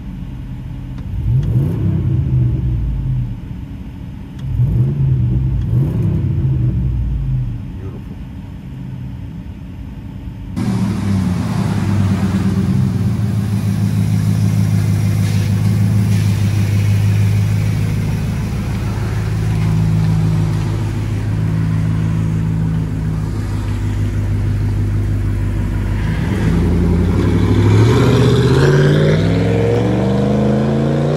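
2004 Dodge Dakota 4.7-litre V8 with a straight-piped dual exhaust (high-flow catalytic converters, no mufflers). It is revved twice from inside the cab, then heard from outside idling with a steady low drone. Near the end it pulls away and accelerates, its pitch rising.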